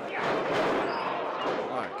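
A wrestler is whipped across the ring into the corner turnbuckle: boots thudding on the ring canvas and the body hitting the padded corner, over crowd noise in the hall. A commentator starts to react at the very end.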